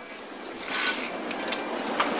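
Fabric rustling and handling noise that starts about half a second in and grows louder, with a couple of sharp clicks near the end.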